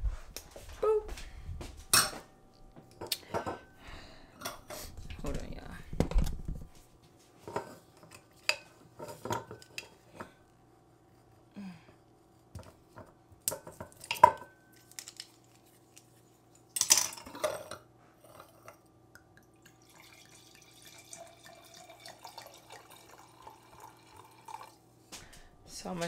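White wine poured from a bottle into a stemmed wine glass: scattered clinks and knocks of glass and bottle, one clink ringing briefly about fourteen seconds in, and the splash of wine filling the glass.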